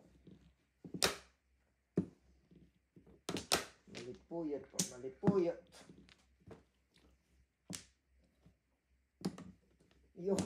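Mahjong tiles clacking as they are drawn and discarded onto a felt-topped mahjong table: sharp single clicks, spread irregularly a second or more apart, with low voices murmuring in the middle.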